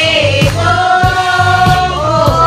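Group singing over music with a steady beat and bass line: several voices holding a slow sung melody.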